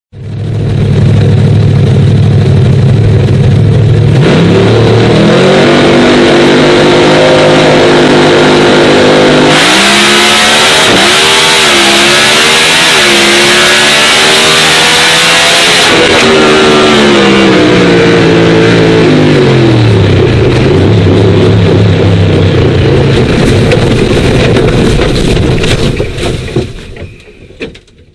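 On-board sound of a drag racing car's engine. It idles, revs up and holds high revs, then runs flat out for about six seconds with a loud rushing noise and wavering pitch. The revs then fall away and it settles back to idle, fading out near the end.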